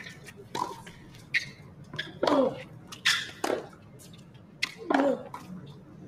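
Tennis rally: a ball struck back and forth with rackets in a series of sharp hits about a second apart, several of them with a player's short grunt.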